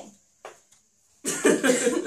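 A person coughs loudly a little over a second in, after a short lull.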